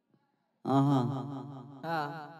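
A man singing a slow, drawn-out melodic line into a microphone, starting after about half a second of silence.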